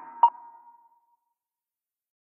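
The tail end of an electronic minimal techno track: a thin lingering synth tone and one short, high electronic ping about a quarter second in, echoing away to nothing within a second.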